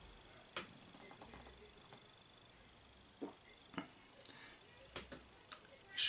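A man sipping and swallowing beer from a glass: mostly near silence, broken by about half a dozen faint, short mouth and throat sounds spread through.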